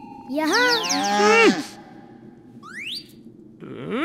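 A voice actor's cry for the animated bull Nandi, a wavering call lasting just over a second that falls in pitch at the end. Near the three-second mark comes a short rising whistle-like slide.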